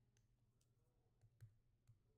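Near silence, with a few faint clicks from a stylus tapping a tablet screen while writing dots.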